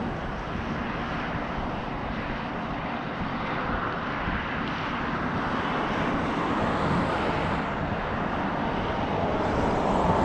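Steady wind buffeting the microphone, a fluttering rumble with no distinct sounds standing out.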